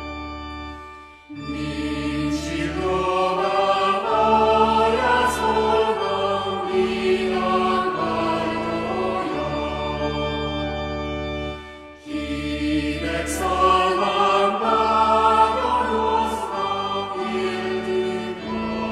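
A choir singing a slow Christmas song over sustained low accompaniment. The music pauses briefly between phrases twice, about a second in and again near twelve seconds.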